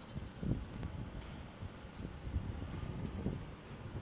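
Faint low background rumble with a few soft bumps, in a pause between spoken sentences.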